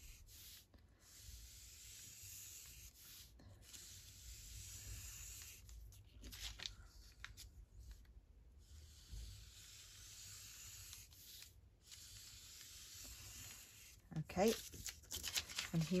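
Alcohol marker drawing lines on tracing paper: a faint scratchy rubbing of the tip across the paper, in strokes broken by short pauses.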